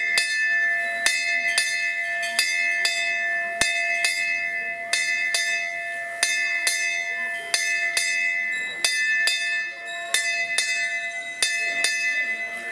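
A Hindu puja bell rung steadily, struck about twice a second, its tones ringing on between strikes.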